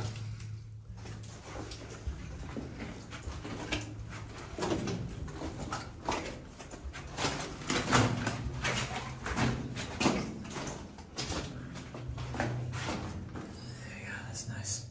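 Footsteps crunching and scuffing over the loose gravel and rock floor of a mine tunnel, in an uneven walking rhythm, over a steady low hum.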